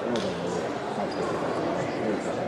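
Indistinct voices of people talking in a large sports hall, with one sharp click of a table tennis ball near the start.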